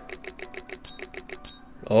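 Stake Keno's number-draw sound effects: a rapid run of short ticks, about eight a second, as the drawn numbers are revealed on the board, stopping about one and a half seconds in.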